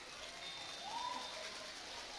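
Faint open-air ambience of a football pitch with one faint distant call, rising briefly then held, about halfway through.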